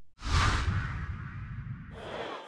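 A whoosh sound effect used as a logo transition: a sudden sweep about a quarter of a second in that fades over about a second, over a low rumble that dies away near the end.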